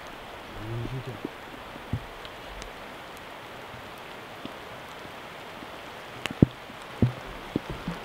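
Steady background hiss, with a brief low murmur about a second in and a few sharp clicks near the end, the loudest a little after six seconds in.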